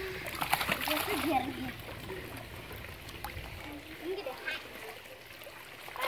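Water splashing in a swimming pool as children swim, loudest in the first second and a half, with a child's voice calling out over it.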